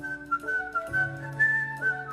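A high, pure-toned melody of short held notes over a live band's upright bass accompaniment, in an instrumental break of a slow song.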